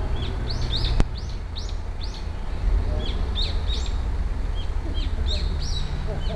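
Small birds chirping repeatedly in short, high, arched calls over a steady low rumble, with a single sharp click about a second in.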